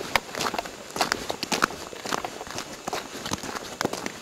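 Footsteps crunching in snow, an uneven run of steps, a few each second.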